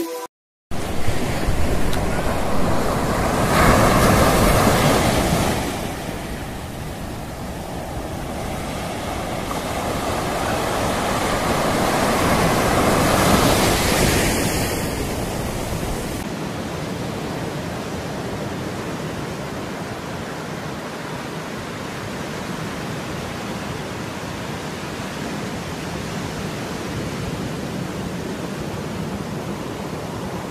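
Ocean surf breaking and washing up a sandy beach, with wind on the microphone; the wash swells louder about four seconds in and again around thirteen seconds.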